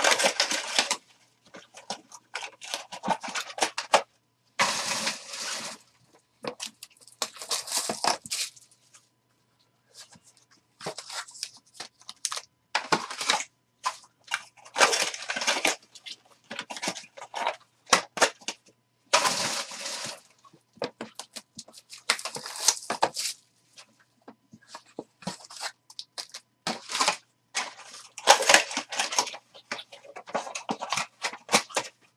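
Plastic and foil wrapping being torn open and crinkled in short, irregular bursts with brief pauses between, as trading-card boxes and packs are unwrapped.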